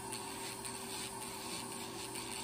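Podiatrist's rotary nail drill grinding down a thick, damaged toenail with a burr: a steady motor hum under a faint scraping.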